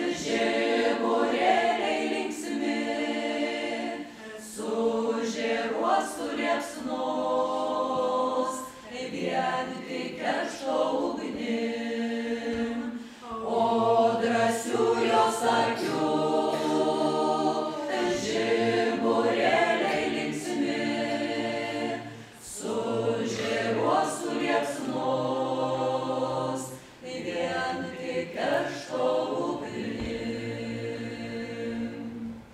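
A Lithuanian folk ensemble of several voices singing a folk song a cappella, in long held phrases with short breaks between them.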